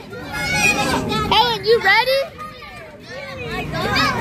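A crowd of children's high voices shouting and calling out over one another, with a brief lull a little after the midpoint.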